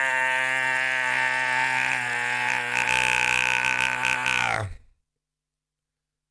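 A man's voice holding one long, low, steady-pitched vowel for almost five seconds, then cutting off abruptly.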